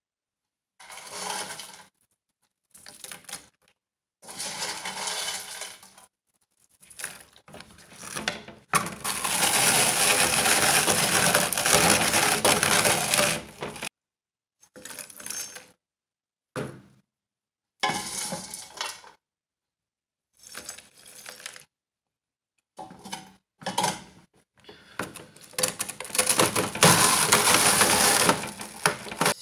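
Fried, puffed edible gum (gond) being crushed in a red lever hand press with a perforated metal disc: repeated bursts of crunching, cracking and metal clinks separated by short pauses, with a longer unbroken stretch of about five seconds in the middle.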